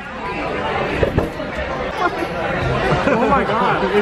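Voices talking indistinctly amid the chatter of a busy restaurant dining room, with a brief knock about a second in.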